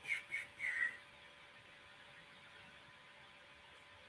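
Three short, soft whistled notes in the first second, the last gliding up slightly, followed by quiet room tone.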